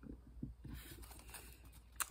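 Faint rapid patter and rustle of a deck of tarot cards being handled and shuffled, starting a little under a second in.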